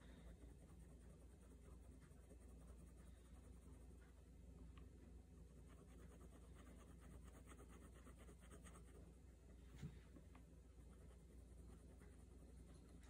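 Faint scratching and ticking of a Micron fineliner pen drawing short strokes on sketchbook paper, with one soft knock about ten seconds in.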